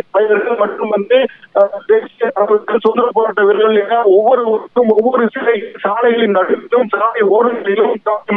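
A man speaking Tamil over a telephone line, talking steadily with only short pauses; the voice sounds thin, with no bass or treble.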